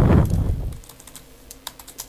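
Computer keyboard being typed on as an email address is entered: a quick run of light key clicks in the second half, after a louder low rumble at the start.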